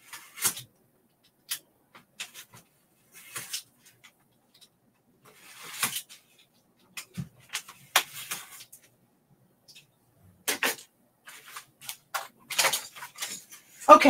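Craft knife blade cutting through foam board in short, irregular scratchy strokes with brief pauses between them.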